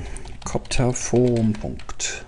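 Typing on a computer keyboard: a quick run of keystroke clicks.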